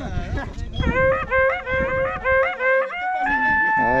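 Wakrapuku, the Andean cow-horn trumpet, playing a quick run of short repeated notes and then a long held higher note from about three seconds in. A few voices sound at the start.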